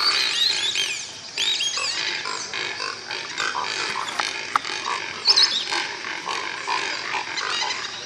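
A dense chorus of wild animal calls, mostly birds, with many short chirps and squawks falling in pitch, some overlapping, and scattered clicks.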